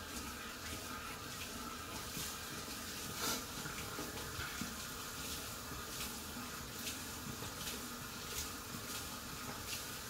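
Bathroom sink tap running steadily into the basin while water is splashed onto a beard, with a few faint splashes and taps over the steady flow.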